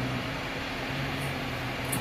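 Ford Ranger pickup's 2.5-litre four-cylinder flex-fuel engine running at low speed as the truck reverses slowly: a faint, steady low hum.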